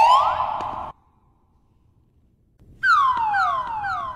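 Edited-in electronic sound effect: a tone sweeps upward and cuts off sharply about a second in. After a pause of a second and a half, three quick falling sweeps follow, siren-like.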